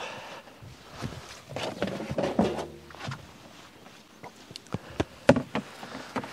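Dry outer onion skins rustling and crackling as an onion is handled and peeled, with a few sharp crackles near the end.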